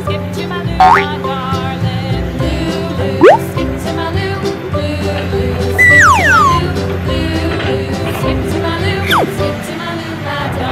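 Upbeat children's background music with cartoon sound effects laid over it: whistle-like pitch slides, one rising about a second in and another about three seconds in, then falling slides around six and nine seconds.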